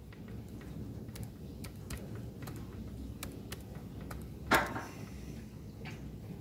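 Keys typed one at a time on a computer keyboard: sparse, irregular clicks. There is one much louder, brief noise about four and a half seconds in.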